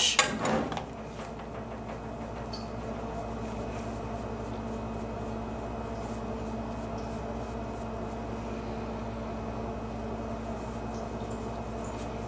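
Steady low hum of room tone with a few fixed drone tones, unchanging throughout.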